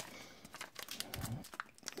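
Faint crinkling of a baseball card pack wrapper and soft clicks as the pack is pulled open and the cards are worked out of it.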